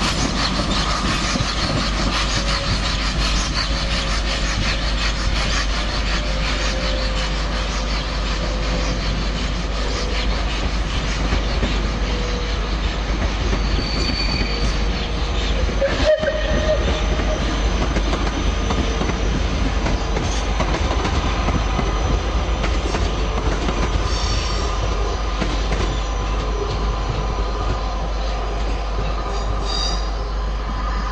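Steam locomotive 35028 Clan Line, a rebuilt Merchant Navy Class Pacific, moving slowly with its train through curved station track: steady wheel-and-rail noise with clicks over the joints and a faint squeal of flanges on the curve. A single sharp click comes about halfway through.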